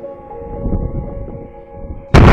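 Background music with held, sustained notes, over a low rumble of wind on a phone's microphone.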